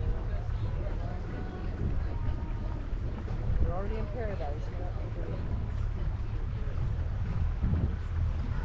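Motorboat under way at low speed: a steady low engine rumble with wind buffeting the microphone. A brief cluster of wavering pitched sounds comes near the middle.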